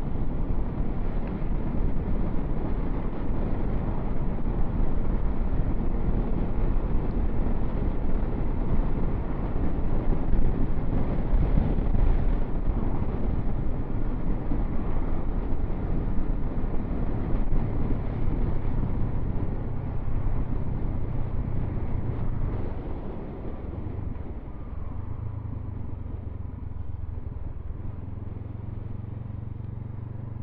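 Motorcycle riding at road speed, with the engine running under heavy wind noise. About two-thirds of the way through the sound gets quieter and the engine's low, steady hum comes through more clearly.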